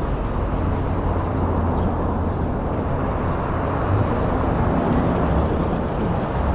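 Steady background noise with a low hum underneath it, in the lecture recording's pause between sentences. Nothing starts or stops.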